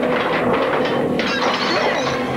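Sounds of a violent struggle: crashing, with wood and glass breaking, over a tense music score.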